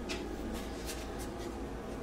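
Faint rustling and light rubbing of paper oracle cards being handled, with a few soft ticks, over quiet room tone.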